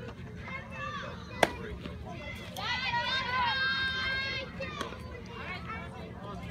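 A baseball bat strikes a pitched ball once with a sharp crack about a second and a half in, and then several spectators shout and cheer together for about two seconds.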